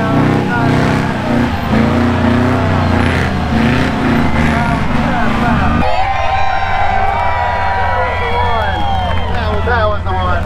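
Engines of off-road rigs running in a sand arena, with people's voices over them. The sound changes abruptly about six seconds in.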